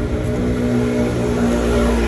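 Street traffic noise with a steady engine hum from a nearby motor vehicle.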